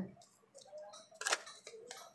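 Tarot cards being handled as the next card is drawn from the deck: faint rustling and small clicks, with one sharp card snap a little past a second in.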